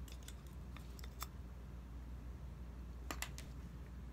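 Light clicks and scrapes of pliers working a chunk of wood out of a sawn slit in a wooden dowel: a few sharp clicks in the first second or so and another short cluster about three seconds in, over a low steady hum.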